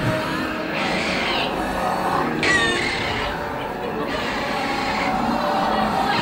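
Music and animal calls from the dinosaur diorama's soundtrack over the running noise of the moving train, with a brief high squeal that falls in pitch about two and a half seconds in.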